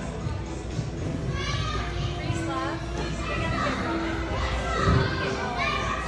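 Children's voices calling and chattering in a large, echoing indoor gym over background music, with a dull thump about five seconds in.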